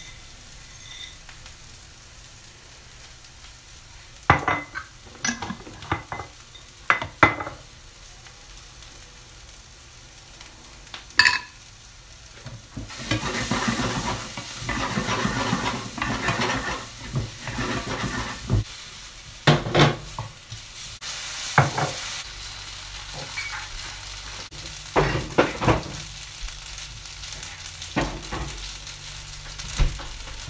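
Chow mein noodles stir-frying in a wok, sizzling as they are tossed and stirred, with sharp knocks and clacks of a utensil against the pan. The sizzling and stirring is busiest through the middle stretch.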